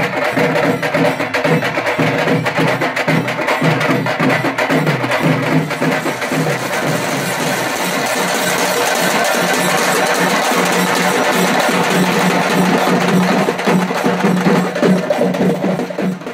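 South Indian temple-festival drum ensemble: several drums play a fast, steady rhythm. A sustained low drone joins about ten seconds in.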